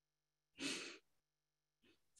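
A single short breath, a sigh-like exhale lasting about half a second, comes just over half a second in. The rest is silence.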